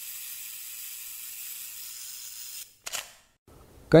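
Title-card transition sound effect: a steady high hiss for nearly three seconds that stops abruptly, followed by a single sharp click with a short tail, then near silence.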